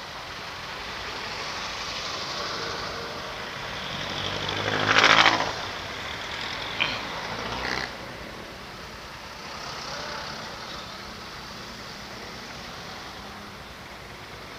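Street traffic noise heard from a motorcycle waiting in traffic, with a louder vehicle sound swelling and fading about five seconds in.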